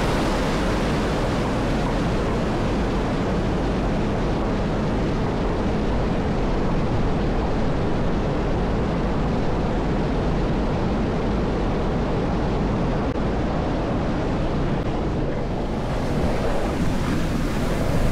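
Water pouring over a stone spillway and churning white at its foot: a steady rush that dips slightly and turns duller near the end.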